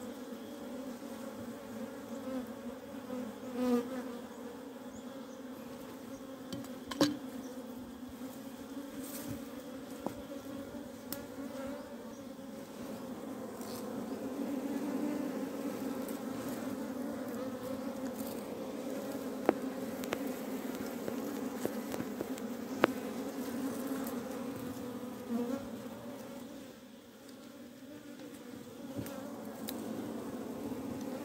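A colony of wild honeybees buzzing steadily over their exposed comb, a dense, even hum, with a few sharp clicks through it.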